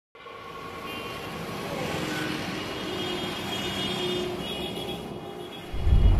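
Ambient sound bed that slowly swells, a wash of noise like distant traffic with faint held tones, broken by a deep bass hit just before the end as the score comes in.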